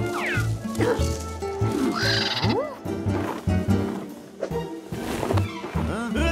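Cartoon soundtrack: bouncy background music with a repeated bass line, over which cartoon characters make wordless squeals and cries that swoop up and down in pitch.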